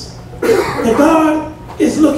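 A man's voice through a microphone, one loud phrase starting sharply about half a second in, then another beginning near the end; the words are unclear.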